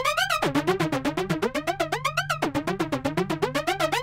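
Ableton Live's Analog synth played through the Arpeggiator: a fast stream of short notes stepping up and down across two octaves, in a pattern that starts over about every two seconds.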